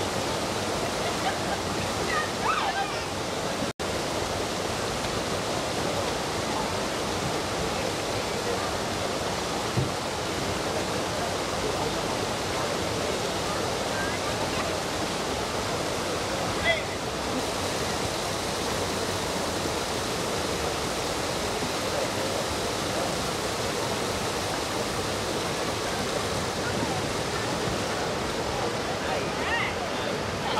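River water rushing steadily over a rocky ledge in the creek bed, a continuous hiss. The sound cuts out for an instant about four seconds in.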